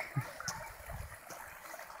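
Faint, steady trickle of running water from a creek, with a few soft low thumps.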